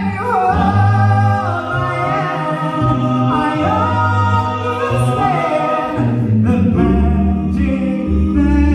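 Four-man a cappella doo-wop group singing in close harmony: a lead voice sliding between notes over sustained backing chords and a low bass voice. The chord breaks briefly about six and a half seconds in, and a new held chord follows.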